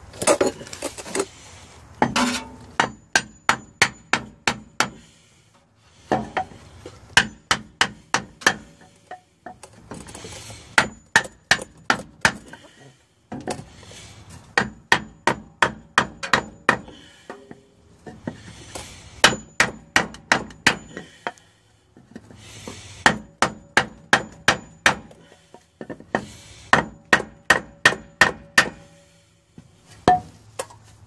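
Hammer striking a wooden board held against a new pinion seal, driving the seal into a Ford Explorer's rear differential housing. Sharp blows come in bursts of about eight, roughly three a second, with short pauses between bursts.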